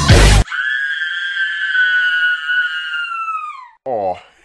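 A dance-routine music mix breaks off after a loud hit, leaving a single high-pitched screamed note held for about three seconds, which sags in pitch and fades out near the end.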